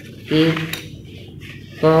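A person says a short word, followed at once by a single short sharp click; after a pause, speech resumes near the end.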